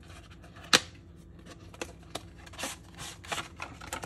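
Cardboard album packaging being handled: one sharp click a little under a second in, then light scattered taps and paper rustles as the photobook and cards are slid out of the box.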